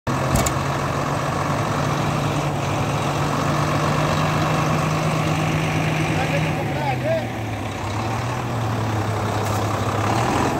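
Diesel engine of a Hyundai crane lorry idling steadily; about seven seconds in its hum settles to a slightly lower pitch.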